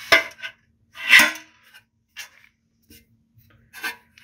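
Clicks and clatter from handling a chassis knockout punch against a stainless steel enclosure as its threaded draw stud is fitted through the pilot hole. A sharp knock opens, a louder scraping clatter follows about a second in, then a few lighter clicks.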